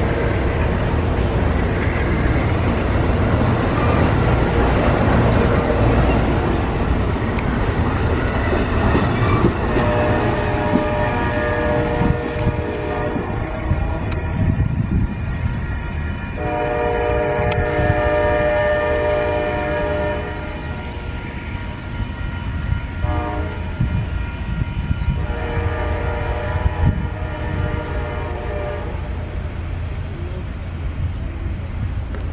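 Amtrak Superliner bilevel passenger cars passing close at speed, their wheels rumbling and clattering on the rail. About ten seconds in, as the train pulls away, its horn sounds the grade-crossing pattern in the distance: long, long, short, long.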